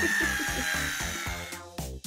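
Cordless drill running, a high whine that sinks slightly in pitch and fades out after about a second, over background music.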